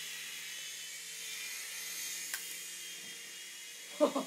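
Small coaxial-rotor RC toy helicopter in flight: its electric motors and twin rotors whir steadily with a high hiss, and a single light tick a little past the middle.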